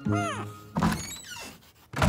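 Cartoon soundtrack: a short falling musical phrase, then a thunk just under a second in, followed by brief high rising squeaky glides.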